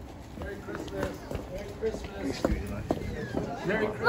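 Indistinct children's voices and scattered footsteps as a group of people walks in through a doorway and along a hallway, with a few sharp knocks among the steps.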